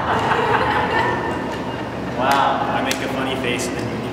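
Indistinct chatter of several people talking in a large hall. A short, high voice rises and falls a little over two seconds in.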